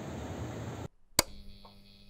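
Steady outdoor background noise that cuts off abruptly about a second in, followed by a single sharp click and then a faint steady electrical hum.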